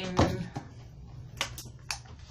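Handling noise from a plastic paper trimmer being picked up: three light, sharp clicks and knocks close together near the end.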